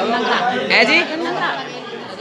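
Speech only: a woman answering briefly in Hindi, with other voices chattering around her.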